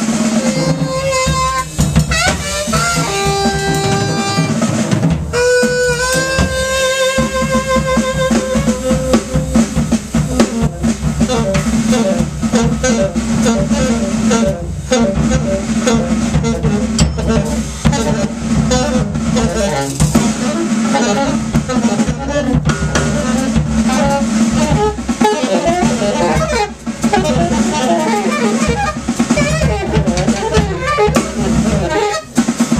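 Alto saxophone and drum kit playing free jazz together. The saxophone holds long notes for the first several seconds, then moves into fast, busy runs over continuous drumming.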